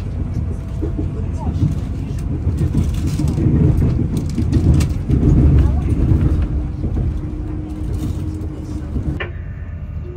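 Class 220 Voyager diesel-electric train heard from inside the carriage as it gets under way: the underfloor Cummins diesel engines and running gear give a deep rumble that swells in the middle. The sound drops away suddenly near the end.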